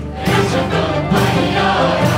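Live Arabic music from an orchestra with a mixed choir of men and women singing over the ensemble.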